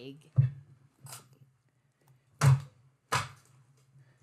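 A few short, sharp clicks and knocks, the loudest about two and a half seconds in, over a faint steady low hum.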